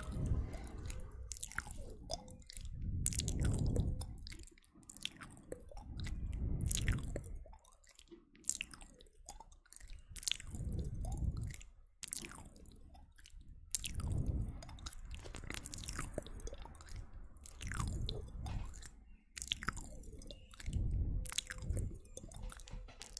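Close-up ASMR mouth sounds right at the microphone: a steady run of wet clicks and pops from lips and tongue, with deep, muffled swells of sound rising and falling every few seconds.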